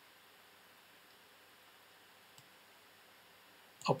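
Near silence: room tone, with a single faint computer mouse click a little past halfway.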